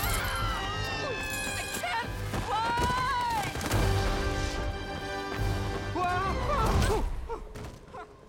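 Film soundtrack mix: music and crashing thuds under cartoon voices crying out in long cries that bend in pitch, one long held cry about a third of the way in. The sound falls away near the end.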